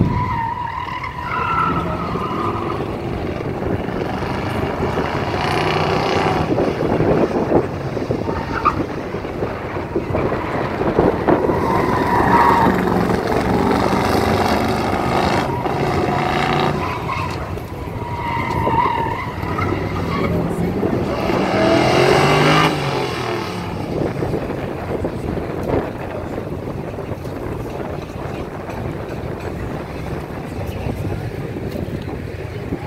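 Classic Chevrolet C10 pickup running an autocross cone course, its engine revving up and falling back between corners. The tires squeal several times in the turns.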